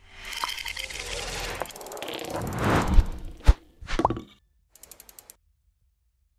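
Logo-animation sound effect: a noisy swell that builds for about three seconds, two sharp hits about three and three and a half seconds in, another hit just after, and then a short fast run of faint ticks.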